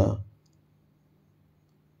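Near silence: room tone with a faint steady low hum, after the end of a spoken word.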